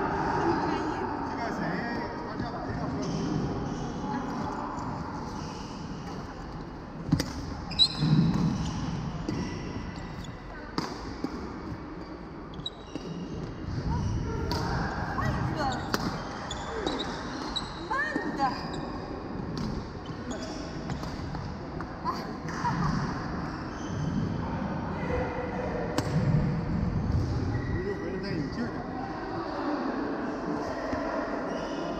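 Badminton racket strikes on a shuttlecock and sneaker squeaks on a wooden sports-hall floor during a rally, in a large echoing hall. The loudest strikes come in a quick cluster about seven to eight seconds in.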